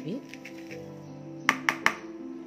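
Soft background music, with three sharp taps near the end as a plastic measuring cup is knocked against a plastic mixing bowl to shake out the last of the shredded coconut.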